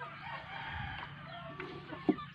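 A rooster crowing: one drawn-out call about a second long, followed by a few short chicken calls.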